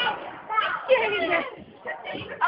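Children's voices talking and calling out, with a brief lull near the end.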